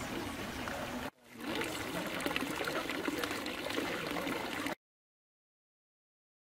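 Outdoor background noise, a steady rushing like running water, with faint voices underneath; it drops out briefly about a second in and cuts off suddenly near the end.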